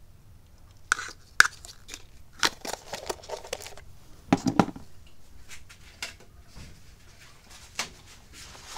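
Painting supplies being handled beside the paint tile: a scatter of light clicks, taps and crinkles, with a louder cluster of knocks about four and a half seconds in.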